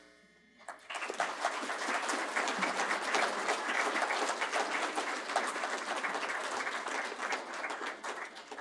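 Audience applauding, clapping that starts about a second in and keeps up steadily.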